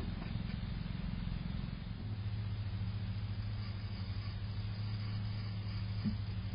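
A steady low mechanical hum that settles into a steadier drone about two seconds in, with a few faint ticks in the first second.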